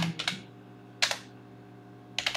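Typing on a computer keyboard: a quick run of a few key clicks at the start, then a single keystroke about a second in.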